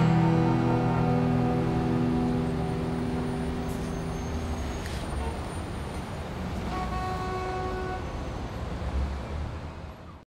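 Acoustic guitar's last chord ringing out and dying away over about four seconds, leaving a steady low rumble of city traffic. A brief steady pitched tone sounds about seven seconds in, and everything fades out at the very end.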